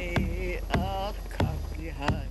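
A hand-held frame drum struck with a beater on a steady beat, about one stroke every 0.6 s, under a voice singing a chant in held and wavering notes.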